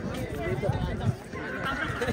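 Basketball players' voices calling out across an outdoor court, mixed with thuds of running footsteps and a ball bouncing on the hard surface.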